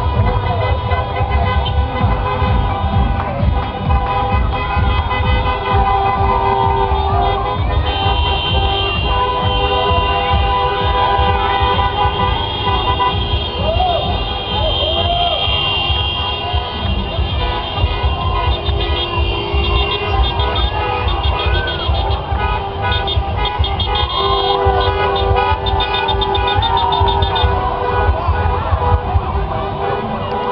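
Many car horns honking, some held for long stretches, over loud music and voices from a motorcade of cars passing slowly by.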